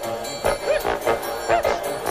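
Upbeat music: a melody of short notes that swoop up and down in pitch, over a regular beat.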